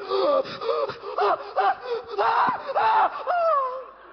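A performer's high-pitched, squeaky voice making a string of short cries that bend up and down in pitch, ending in a longer falling moan near the end.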